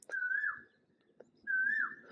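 A bird's whistled call, given twice about a second and a half apart: each a short held note that drops in pitch at its end.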